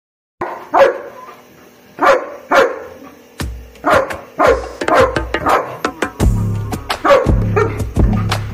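German Shepherd barking, about ten sharp barks in a row, with background music carrying a heavy bass beat that comes in part way through.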